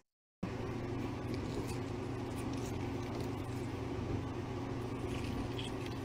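Steady low mechanical hum with faint small clicks and handling noises, cutting to dead silence for a moment at the very start.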